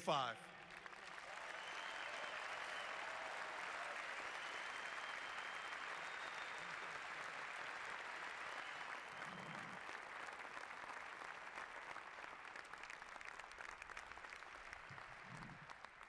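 Audience applauding. The applause swells over the first couple of seconds, holds steady, then slowly fades near the end.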